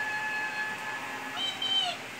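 A meow-like animal cry, one call that rises and falls in pitch near the end, over a faint steady high tone.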